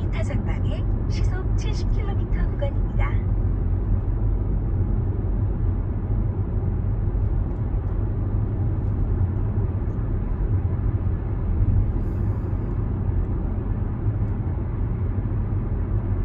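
Steady low rumble of tyre and engine noise heard inside the cabin of a Kia Seltos cruising at about 60 km/h.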